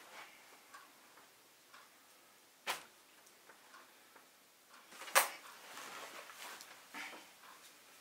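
A few isolated sharp clicks and knocks over quiet room tone, the loudest about five seconds in, followed by a second or two of faint rustling, from papers, pen and chair being handled at a kitchen table as someone gets up.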